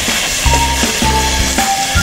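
Prawns, squid and dried red chillies sizzling in hot oil in a stainless steel pot as they are stirred with a wooden spatula, under background music.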